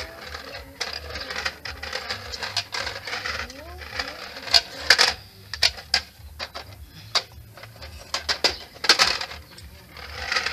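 A plastic pull-along caterpillar toy with a wagon rattling and clattering on a concrete floor as it is pushed, rolled and tipped over. It makes a run of sharp plastic clicks, loudest about halfway through and again near the end.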